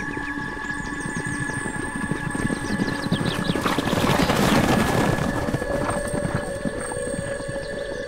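A sound effect of a herd of hoofed animals stampeding, a dense rumble of many hoofbeats that swells in the middle and eases off, over a sustained music bed.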